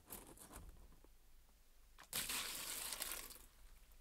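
A bucket of water poured out into a stone trough, a splashing rush about a second long starting about halfway in, after a few light knocks.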